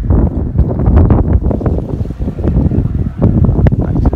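Wind buffeting the microphone: a loud, gusting low rumble that swells and dips unevenly.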